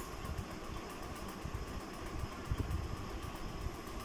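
Dark green wax crayon dragged across notebook paper in a zigzag stroke, a faint scratching with light bumps of the hand on the table, over a steady low room hum.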